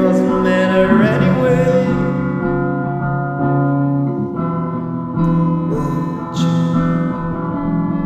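Alternative rock recording: sustained keyboard and guitar chords that change every second or two, with a sliding vocal line over them in the first two seconds.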